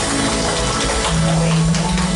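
Live worship band music: acoustic guitar, drum kit and tambourine, with a strong held low note coming in about a second in.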